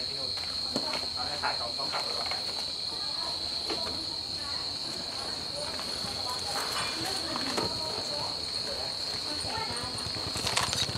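Crickets trilling steadily at one high pitch, with a few light knocks and faint voices in the background.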